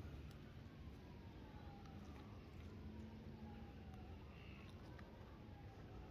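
Near silence: faint outdoor ambience with a faint, repeated falling tone.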